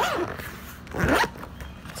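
Zipper on a socket-set case being pulled open in two quick strokes, one at the start and one about a second in, each with a sweeping buzz.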